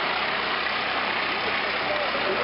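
Steady rushing background noise of a gym, with faint voices drifting in and out from about halfway through.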